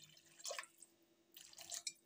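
Water being poured into a metal wok of tomato masala: faint splashing and dripping, in two short spells.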